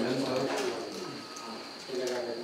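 A bird calling, with quiet talk.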